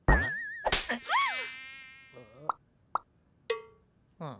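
Cartoon sound effects: a cartoon mosquito's high, wavering whine, cut by a sudden loud hit, then a rising-and-falling swell and a few short clicks.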